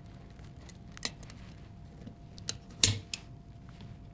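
Small clicks and taps of a pistol magazine being reassembled by hand as an aluminum extended base plate is slid onto the magazine tube, with the sharpest click a little before three seconds in as the plate seats.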